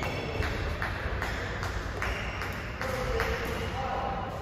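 Rubber-soled court shoes squeaking in short chirps on a badminton court, with a regular tapping about two to three times a second and voices in the hall.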